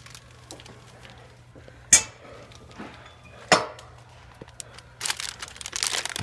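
Rustling and scuffing handling noise among cardboard boxes, with two sharp scuffs about two and three and a half seconds in and a burst of crackly rustling near the end, over a low steady hum.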